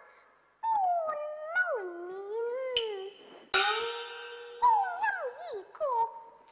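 A young girl singing a Cantonese opera vocal line in a high voice, with long sliding and wavering notes and short breaks between phrases. It starts about half a second in.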